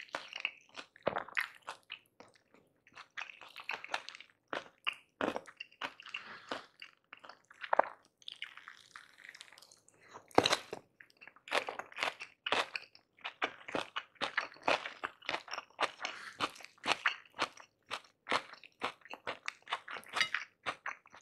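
Close-miked chewing of tahu gimbal, Semarang fried tofu with shrimp fritters and cabbage in peanut sauce, giving many short, crisp crunches. The crunches are sparser in the first half and come thick and fast in the second half.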